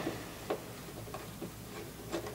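Torx screwdriver working a T20 screw that holds the third brake light: a few light ticks of metal on metal, the sharpest right at the start, another about half a second in, then fainter ones.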